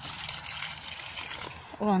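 Water poured from a plastic jug onto loose soil in a planting hole, a trickling splash that stops about a second and a half in.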